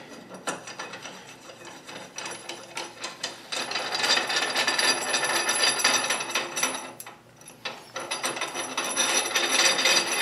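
Steel cross-slide screw of a South Bend 13-inch lathe being turned and worked by hand in the saddle, metal rubbing and clicking in quick succession. It gets louder about a third of the way in, stops briefly after about seven seconds, then starts again.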